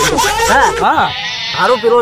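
Men talking, one voice wavering in a drawn-out stretch; speech only.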